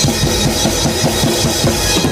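Drum kit played live, a quick run of drum strokes at several a second with cymbals ringing over it.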